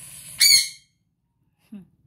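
A brief scrape followed by one short, loud, high-pitched squeak that dips slightly in pitch.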